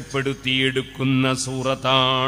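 A man's voice chanting Arabic in a drawn-out, melodic recitation style, holding long steady notes with short breaks between phrases.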